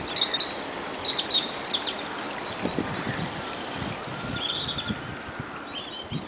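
Small songbirds chirping and calling over the steady trickle of a shallow woodland stream; the chirping is busiest in the first two seconds, with a short trill about four and a half seconds in.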